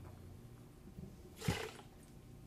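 A brief splash-like whoosh about one and a half seconds in, as a small rinse of red wine is tossed out of a wine glass to season it before tasting.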